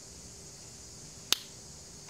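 A single sharp click or snap a little past halfway, over a faint steady hiss.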